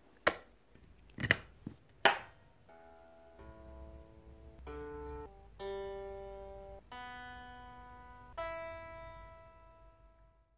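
A few sharp knocks as the pedals on the floor are handled, then an electric guitar played through an amp: a slow series of notes and chords, each left to ring out, the last one fading away near the end.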